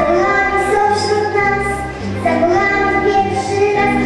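A young girl singing a melody into a handheld microphone, holding long notes, over amplified musical accompaniment with a steady bass.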